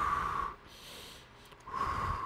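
A man breathing deeply from the belly to demonstrate diaphragmatic breathing: two long audible breaths, one at the start and one starting about a second and a half in, each lasting about half a second.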